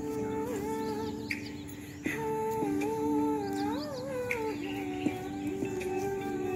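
Devotional prayer song accompanying a dance: a melodic voice holding long notes that bend and glide, over a steady drone.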